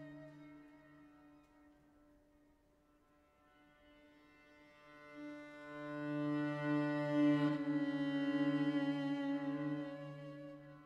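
Solo cello bowing long, held low notes that fade almost to nothing, then swell back loud from about halfway through.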